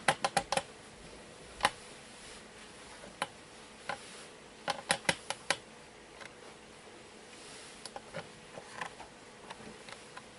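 Sharp, irregular clicks and taps: a quick run of four at the start, single ones over the next few seconds, another quick run of five around the middle, then fainter scattered ticks, over a faint steady hum.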